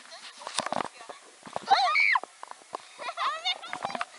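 A short, high-pitched vocal sound about halfway through and a fainter one near the end, over knocks and rustles from the camera being handled.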